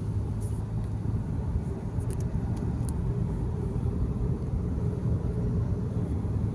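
Steady low rumble of a car in motion: road and engine noise, with a few faint light ticks in the first half.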